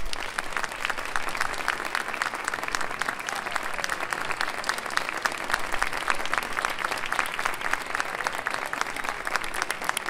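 Audience applauding a finished performance by a wind band: steady, dense clapping from many hands.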